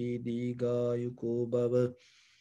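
A Buddhist monk chanting in a low male voice, holding steady notes in phrases with short breaks between them, then stopping near the end.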